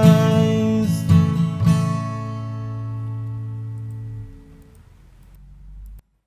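Steel-string acoustic guitar strummed three times, the last strum being the closing chord, which rings on and fades away over a few seconds.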